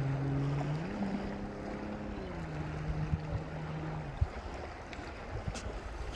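A motor engine running with a steady hum, its pitch stepping up about a second in and easing down a little after about two seconds, then cutting out about four seconds in. Outdoor background noise runs underneath.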